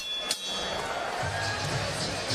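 Boxing ring bell struck twice in quick succession, ringing out for about a second, signalling the end of the round, over steady arena crowd noise.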